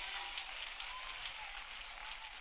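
Faint, scattered clapping from a congregation giving a praise.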